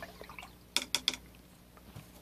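Three quick, faint clicks close together, about three-quarters of a second in.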